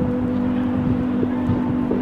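Street noise: a steady low engine hum, like a vehicle idling close by, over a rumble of traffic.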